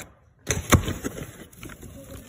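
Kraft honeycomb packing paper being handled and pulled out of a cardboard box, making irregular crackles and crinkling rustles that start about half a second in.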